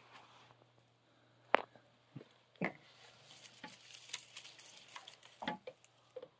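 Faint rustling and crackling in straw bedding with scattered sharp clicks and taps, the loudest about a second and a half in.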